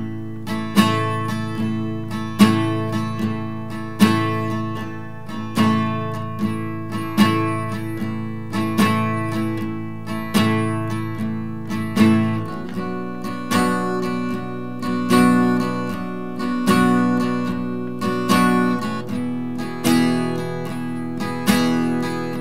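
Steel-string acoustic guitar with a capo on the second fret, strummed in a steady rhythmic pattern. It moves from G to A minor about 12 s in, then to D near 19 s.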